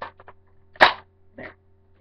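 Plastic Nerf magazine, two mags taped together as a flip mag, being pushed into the blaster's magazine well: a few small clicks, then one loud sharp clack a little under a second in and a softer one about half a second later.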